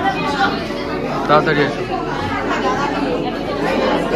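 Many students chattering at once in a large classroom, overlapping voices echoing slightly.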